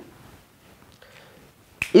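Quiet room, then near the end a single sharp plastic click: a whiteboard marker's cap snapped shut.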